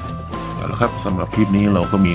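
Background music: held instrument notes over a steady low drone, with a voice over it.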